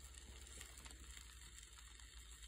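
Faint hiss and crackle of surface noise from a 1927 Victor Orthophonic shellac 78 rpm record in its lead-in groove, with a low rumble underneath.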